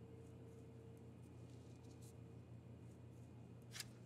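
Near silence: room tone with a faint steady low hum and one faint click near the end.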